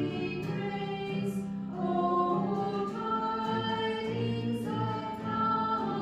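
Church choir singing a hymn in several voices, with long held notes over a low bass part.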